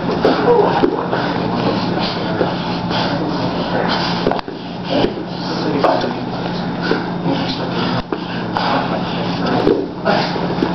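Two grapplers rolling on a foam mat: bodies shuffling and rubbing against the mat and each other, with indistinct voices in the background and a steady low hum.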